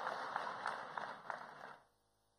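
Audience applause dying away to a few scattered claps, stopping shortly before the end.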